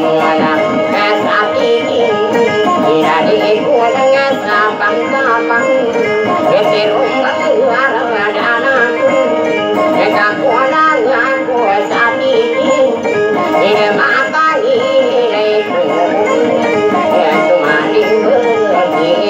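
A Maguindanaon traditional song: a voice singing into a microphone with a wavering, ornamented melody, accompanied by two plucked acoustic guitars.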